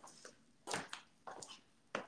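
A few soft, quiet steps and knocks with some fabric rustle, about one every half second, as a person walks back to the spot; the last one is a sharper tick near the end.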